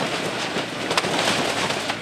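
Excavator demolishing a wood-frame house: a steady hiss of water spray on the wreckage, with crackling and snapping of splintering wood and falling debris, and one sharp crack about a second in.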